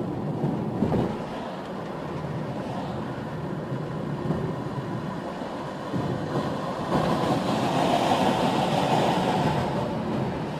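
Road and engine noise from inside a moving car: a steady low rumble with a few knocks in the first second, growing louder and hissier from about seven seconds in.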